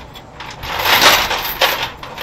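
Heavy steel tie-down chains rattling and clinking as they are handled and tightened, loudest about a second in, with a sharp clank near the end.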